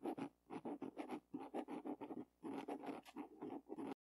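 Pen writing on paper: a run of many short strokes as letters are written out by hand. It cuts off suddenly just before the end.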